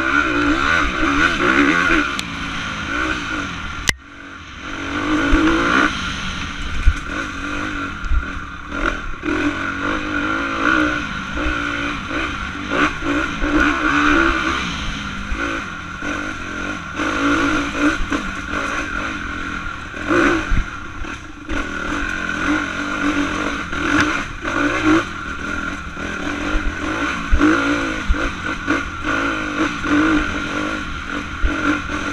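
2016 Honda CRF250R's single-cylinder four-stroke engine revving up and down repeatedly as the dirt bike is ridden along a rough trail, heard close up from a camera on the bike. The engine note drops sharply for a moment about four seconds in before picking up again.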